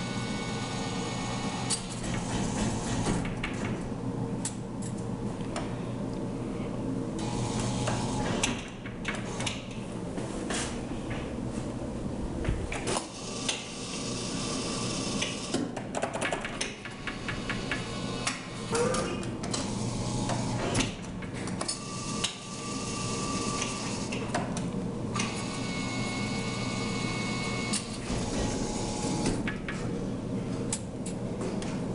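Claw machine in play: a steady machine hum with frequent metallic clicks and clanks from the claw and its controls.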